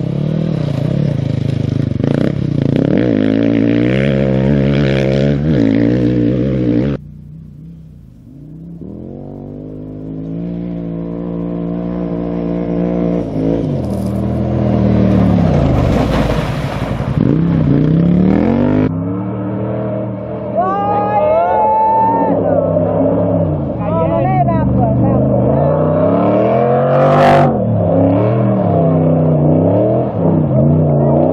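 Off-road rally engines revving hard as competitors pass on a loose gravel course, their pitch rising and falling with throttle and gear changes. The sound is cut abruptly twice, running through a rally motorcycle, a quad and a rally car.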